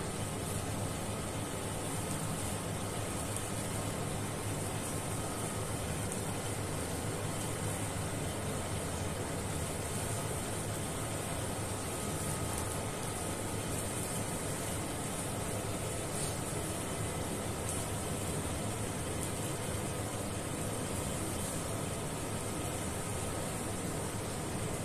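Steady background hiss with a low hum, unchanging throughout, and no distinct sounds from the surgery.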